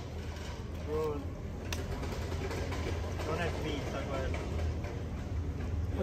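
Steady low hum of outdoor city background noise, with faint distant voices now and then.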